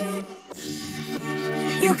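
Isolated pop vocals: a held sung note fades out, then soft sustained backing harmonies hum under the gap until the lead voice comes back in with a new line near the end.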